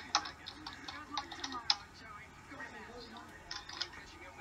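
Faint speech from a television's speaker: a televised interview playing in the room, quieter than the people nearby.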